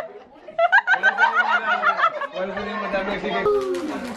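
Several people laughing in a quick run of bursts, mixed with voices, with a change to calmer talk near the end.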